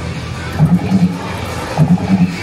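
Arcade din: background music mixed with electronic arcade-game sounds, with two short runs of low notes.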